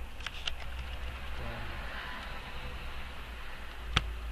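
A few sharp computer keyboard and mouse clicks while text is cleared from a box, over a steady low electrical hum, with one louder click near the end.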